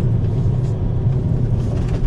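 Fiat Bravo driving on a gravel track, heard from inside the cabin: a steady low engine and tyre rumble.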